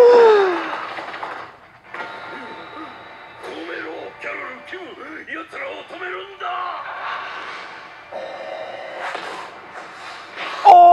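Anime episode soundtrack: character dialogue over background music, opening with a loud falling-pitch sound right at the start.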